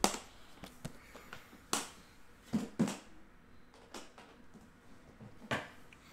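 A series of sharp clicks and knocks, irregularly spaced, as a closed aluminium Panini Flawless briefcase is handled at its metal latches and moved.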